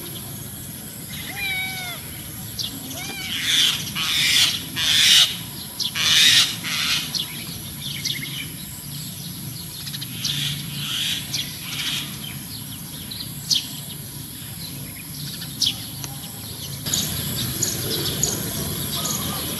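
Birds calling and chirping, with a run of loud, harsh calls from about three to seven seconds in and scattered short chirps after.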